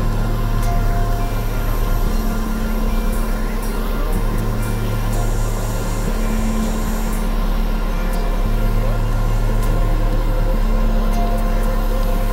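Experimental synthesizer drone music: a constant deep bass drone under sustained low tones that drop out and return every couple of seconds, with a dense noisy texture on top.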